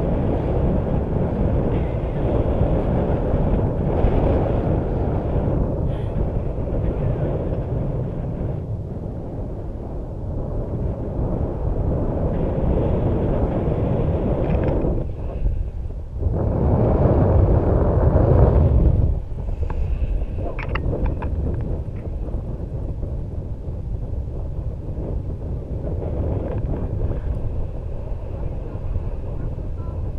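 Airflow rushing over the microphone of a camera on a tandem paraglider in flight: a steady low rumble that briefly drops out a little past the middle, then swells louder for a couple of seconds.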